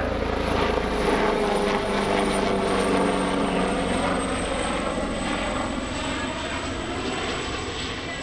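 AgustaWestland AW139 twin-turboshaft helicopter flying past with its rotor and turbines running steadily. A high turbine whine drops slowly in pitch as it moves away, and the sound eases slightly near the end.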